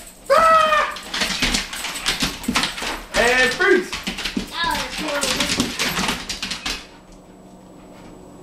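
Dogs' claws clicking and scrabbling on a tile kitchen floor as several German Shorthaired Pointers leap and scramble in play, with a few short high-pitched cries among them. It stops about a second before the end.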